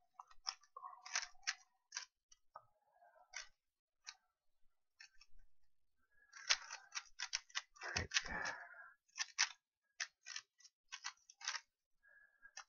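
Clicking and clacking of a stickerless 3x3 speed cube's layers being turned fast during a timed solve. The turns come in short runs with brief pauses, getting quicker and denser in the second half. There is a dull thump about eight seconds in.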